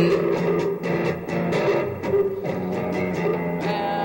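Instrumental break in a song: a guitar strummed in an even rhythm over a held low note, with a higher sustained tone coming in near the end.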